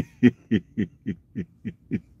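A man laughing in a run of short, even chuckles, about four a second, each falling in pitch.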